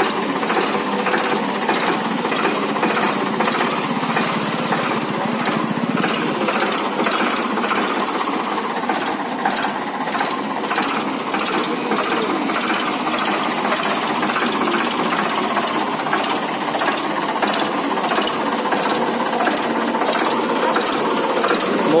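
Ford 3600 tractor's three-cylinder engine idling with a steady, rapid clatter.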